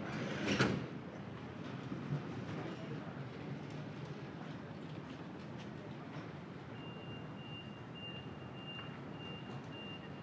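City street traffic noise, with a brief loud rush of noise about half a second in. From about seven seconds a high electronic beep repeats about one and a half times a second, the kind of warning beep a reversing vehicle gives.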